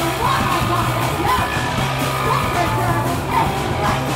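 Live punk band playing loud, with electric guitar and bass under a yelled vocal.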